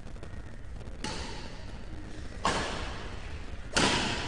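Badminton racket strikes on a shuttlecock during a rally: three sharp hits about a second and a half apart, each louder than the last. The final, loudest hit near the end is an overhead shot.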